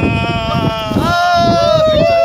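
Several people's voices holding long, drawn-out calls that overlap one another at a fairly high pitch, wavering slightly.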